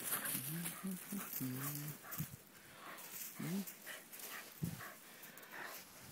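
Pyrenean Shepherd dogs play-fighting in snow. There are several short, low whines and grumbles in the first two seconds and another about three and a half seconds in, over faint scuffling.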